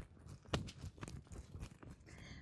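Footsteps hurrying over paving stones strewn with dry leaves: faint, irregular crunches and clicks, the sharpest about half a second in.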